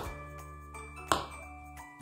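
Background music with steady bell-like tones. Over it come two sharp knocks, one at the start and a louder one about a second in, as a small metal jigger and a cream carton are handled on a countertop.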